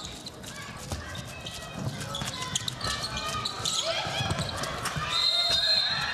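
Indoor handball arena during play: players' shouts and crowd voices echoing in the hall, with the handball bouncing on the court floor. A brief high steady tone sounds about five seconds in.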